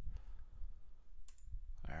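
A computer mouse click about a second in, over a low steady hum.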